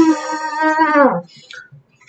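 A man's voice making a buzzy, kazoo-like imitation of a great bustard's call, 'like someone farting through a kazoo': one held note that drops in pitch and stops just over a second in. A short laugh follows.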